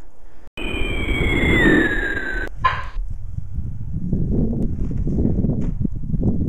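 A cartoon falling-bomb whistle sound effect that glides down in pitch for about two seconds and cuts off abruptly with a short blip, standing in for the bullet coming back down. Then wind rumbles on the microphone.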